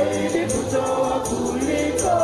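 Church choir singing a gospel-style hymn in several voices, over a steady percussion beat.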